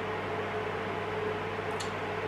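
Steady low hum with an even hiss from a running appliance or fan, with one faint short tick near the end.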